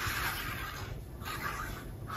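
Fine-tip bottle of liquid glue squeezed and drawn along the edge of a patterned paper strip, the tip scratching over the paper in two passes with a short break about a second in.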